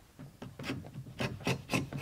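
A V-shaped carving chisel cutting a groove in thick leather: short scraping pushes, about four a second, getting louder towards the end as the blade lifts a curl of leather.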